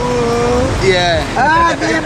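Men's voices talking over the steady rush of river water.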